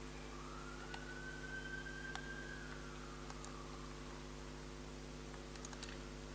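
Steady electrical hum from the hall's sound system, with a few soft clicks from a laptop's keys being worked. A faint whistle-like tone rises slowly and falls again over about three seconds.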